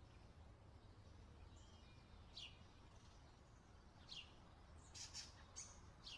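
Near silence with a few faint bird chirps: short, quick downward-sliding notes, one about two and a half seconds in, one about four seconds in, and a cluster near the end.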